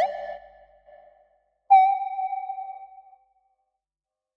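Software synthesizer patch in Reaktor Blocks (West Coast DWG oscillator through an LPG) playing sparse notes: the tail of a gliding note fades out, then a single note starts sharply about one and a half seconds in and dies away over about a second and a half, leaving silence.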